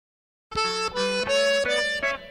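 After half a second of silence, a solo free-reed instrument, harmonica or accordion in sound, plays a short unaccompanied run of notes, each lasting about a third of a second and mostly stepping upward: the intro of a Tejano track.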